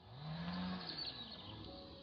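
A cow lowing once: one low call of about a second that rises slightly and then falls away.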